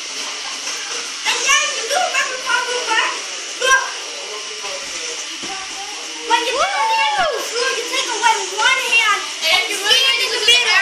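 Children's voices chattering and shouting over one another during play, with one long call that rises and falls in pitch about seven seconds in.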